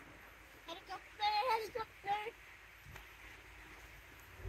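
A bird calling: a quick run of short, pitched calls starting about a second in and lasting about a second and a half.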